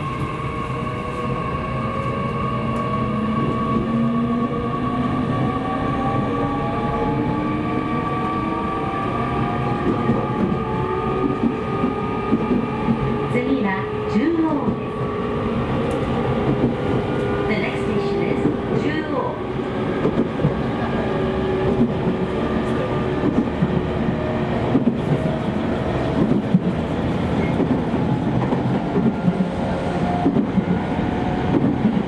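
E501 series electric train running and picking up speed, heard from inside the car: the whine of its inverter-driven traction motors rises slowly in pitch over the rumble of the wheels on the rails.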